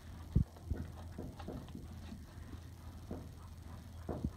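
A Haflinger horse making small sounds in her stall: a few short, low knocks in the first second, then faint scattered sounds over a low steady hum.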